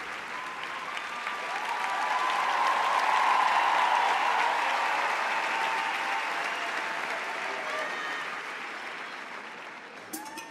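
Large audience applauding, swelling to a peak about three seconds in and then slowly dying away, with a few cheering voices mixed in.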